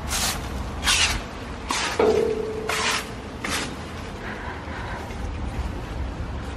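A broom sweeping fallen leaves across paving slabs, in short strokes about once a second that thin out after about three and a half seconds.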